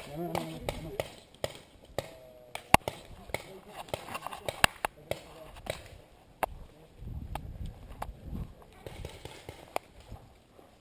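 Sharp clicks and knocks at irregular intervals, the loudest almost three seconds in, with a low rumble of movement later on. A voice is heard briefly at the start.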